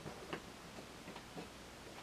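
A few faint, short clicks against quiet room tone.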